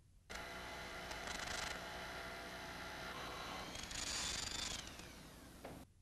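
Electric power drill running overhead. It gets louder twice, and near the end its pitch falls as it winds down. The sound stops abruptly just before the end.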